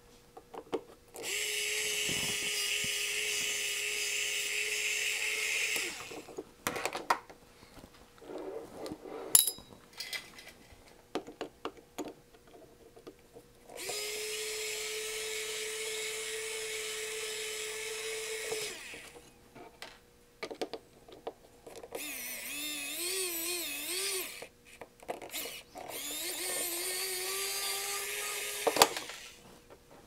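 Small AA-battery electric screwdriver running in four bursts of a few seconds each as it backs screws out of a metal case, its motor pitch wavering during the third run. Short clicks and light knocks of screws and handling fall in the gaps between runs.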